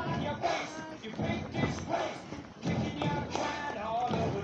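Voices mixed with music that has singing in it.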